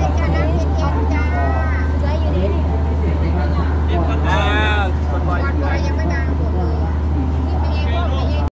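Large truck-mounted diesel generator running steadily with a deep, even hum, with people talking close by over it.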